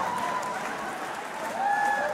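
Concert audience applauding steadily, with a few voices calling out over the clapping.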